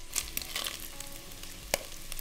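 Smoked bacon rashers sizzling in hot oil in a Dutch oven, with scattered small crackles and one sharp click near the end.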